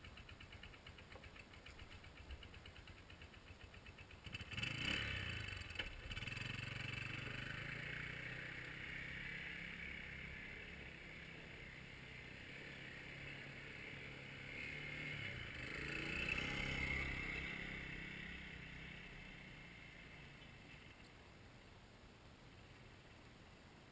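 A small ATV (quad bike) engine starts about four seconds in, then runs and revs at a distance. It grows louder about three quarters of the way through, then fades as the quad moves away.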